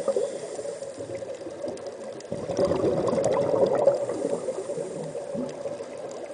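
Underwater water noise with bubbling, swelling about two and a half seconds in and fading again toward the end.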